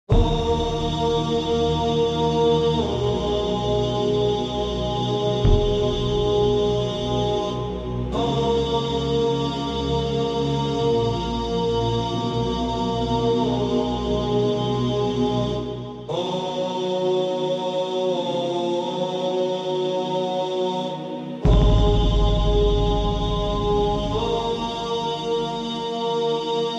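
Slow intro music of chanted or hummed voices over a low sustained drone. The held chord changes to a new phrase about every eight seconds, and the bass comes in heavier for the last few seconds.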